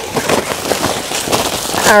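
Close, irregular crackling and rustling as woven plastic geotextile fabric is handled and tucked down over crushed stone, with small stones clicking.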